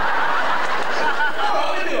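Audience laughing, with a man's laughter over it, dying down near the end as he starts to speak.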